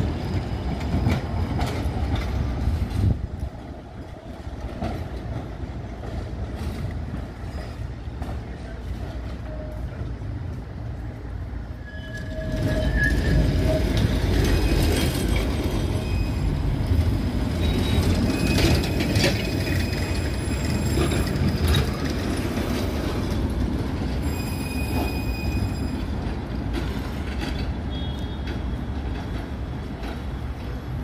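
71-623 (KTM-23) trams running past on street rails, a loud low rumble of wheels on track. It dies down about three seconds in, then rises again about twelve seconds in as another tram passes, with brief wheel squeals from the rails shortly after it starts and again near the end.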